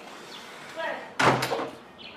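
A loud thump about a second in, like a door banging shut, with brief voices around it.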